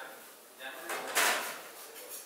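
Gloved hand pressing ground pistachio into a roll of shredded kadayif pastry on a work table, with one loud scraping swish about a second in as the hand slides over the dough and table.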